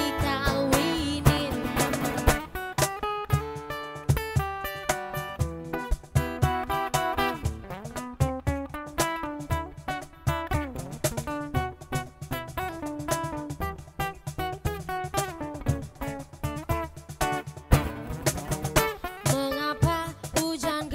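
Live acoustic band music: an acoustic guitar picking an instrumental passage over hand-drum strokes. A woman's singing voice is heard in the first couple of seconds and comes back near the end.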